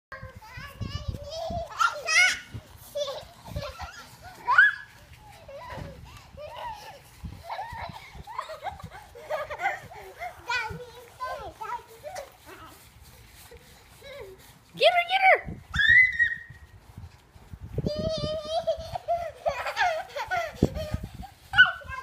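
Young children's high-pitched play vocalisations: squeals, shrieks and babbling without clear words, in short bursts, louder near the end.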